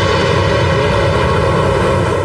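A steady, sustained low rumble under held, unchanging tones: the closing drone of a radio programme's intro jingle.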